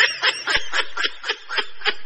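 Rapid, breathy snickering laughter in quick even pulses, about seven a second.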